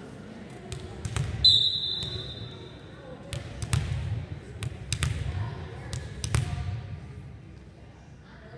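A referee's whistle blows one steady blast of about two seconds, starting about a second and a half in. A volleyball is then bounced on the gym floor several times, each bounce a sharp knock with a low thud, over spectators' chatter.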